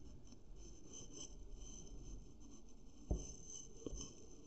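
Faint scratching of a pen writing on paper, with a short soft knock about three seconds in.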